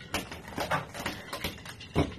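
Ice clinking and knocking in a cocktail shaker as it is handled: a string of short, irregular clicks, about four or five a second.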